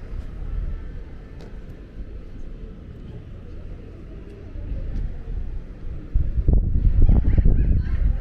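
Wind buffeting the camera microphone, a low rumble that turns into stronger, gusty blasts about six seconds in.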